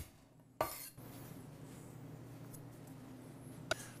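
Garlic clove crushed under the flat of a chef's knife struck with the heel of the hand on a wooden cutting board: one sharp knock about half a second in. A faint low hum follows, with a small click just before the end.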